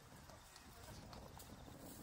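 Near silence: faint background ambience with a few soft knocks.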